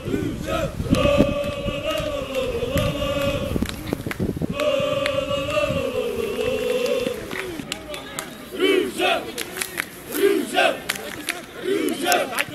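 A group of football supporters chanting in unison: long held sung notes for the first half, then breaking into short separate shouts in the second half.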